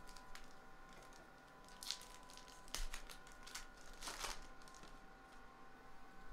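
Baseball trading cards and pack wrapper being handled: soft crinkling and the scattered clicks of cards sliding over one another. There are a few louder rustles about two, three and four seconds in.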